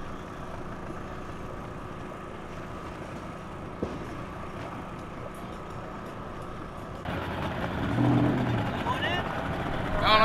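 An outboard motor idling, steady, with a single click about four seconds in. About seven seconds in the sound jumps to a louder engine and water rush.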